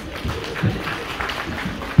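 Audience applauding, with some voices mixed in.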